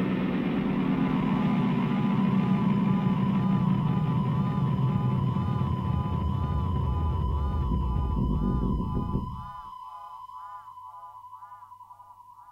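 Closing electronic music: a steady synthesizer tone wavers up and down about twice a second over a low rumbling drone. The drone cuts off about nine and a half seconds in, leaving the warbling tone alone and fainter.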